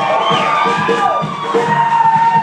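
Live band playing on stage: drums keep a beat under long lead notes that bend in pitch.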